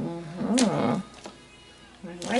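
A woman's wordless sing-song voice, humming or cooing for about a second with the pitch rising and falling twice, then quiet.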